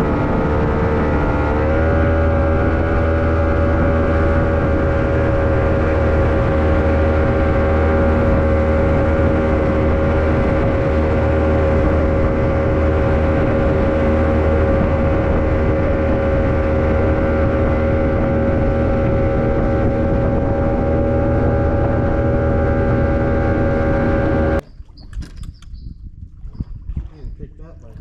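A boat's outboard motor running under way, rising in pitch as it speeds up over the first couple of seconds, then holding a steady drone with a low hum. It cuts off abruptly a few seconds before the end.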